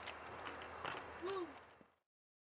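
Faint outdoor background noise with a single tick and one short rising-and-falling call, fading out to silence near the end.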